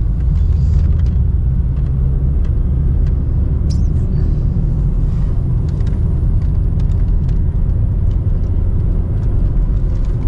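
Road and engine noise heard from inside a moving car's cabin: a steady low rumble of tyres and engine on a winding road.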